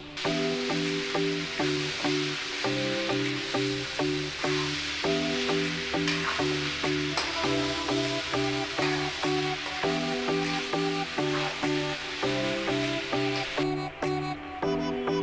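Frying sizzle from chopped tindora (ivy gourd) being stirred in a pan, under background music with a steady beat; the sizzle stops suddenly near the end.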